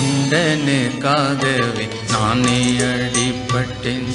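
A devotional song in Indian style: a solo voice sings long, wavering melodic lines with heavy vibrato over sustained instrumental accompaniment.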